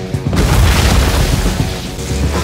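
Film action soundtrack: music with a loud boom that hits about a third of a second in and carries on for over a second, a lightning-blast sound effect.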